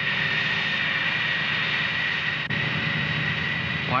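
Jet engine running steadily on the flight line: a high-pitched turbine whine over a rushing roar.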